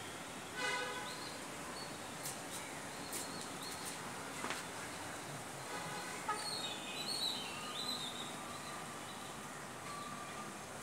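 Birds calling: a short harsh call about half a second in and warbling chirps near the end, with a few light knocks in between.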